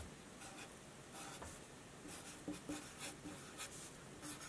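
Felt-tip marker writing capital letters on a sheet of paper: faint, short strokes in an irregular run.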